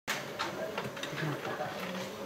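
Quiet talking in a small hall, with a few small clicks and rustles.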